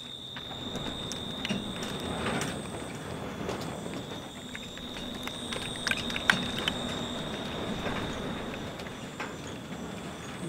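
Ambient sound bed fading in over the first second. It holds a steady high-pitched whine over a low hum and a hiss, with scattered crackles and clicks, the sharpest about six seconds in.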